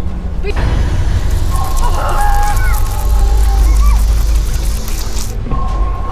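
Rushing hiss of water spray drenching the boat and the camera, over a heavy low rumble, with background music; it cuts off suddenly near the end.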